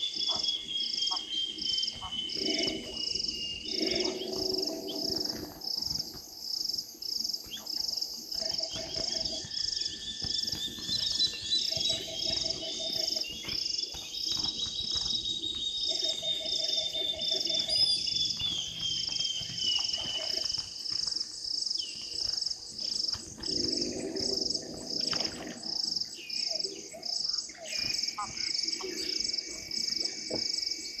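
Night chorus of insects and frogs: a high, even chirping pulses about one and a half times a second, with long high trills that fall slowly in pitch and shorter lower trills lasting about a second each.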